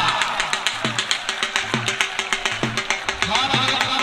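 Music with a fast drum rhythm: deep drum strokes about twice a second under rapid, lighter hits.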